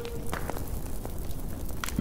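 Fire crackling: a steady noisy rush broken by a few sharp crackles, with no music.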